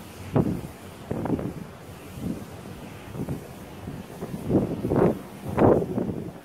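Wind buffeting a phone's microphone in irregular gusts, with the strongest gusts near the end.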